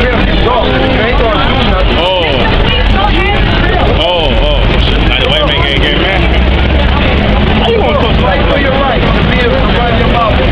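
Voices talking on a city street over a steady low rumble of traffic.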